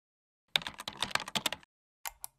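Computer keyboard typing sound effect: a rapid run of key clicks starting about half a second in and lasting about a second.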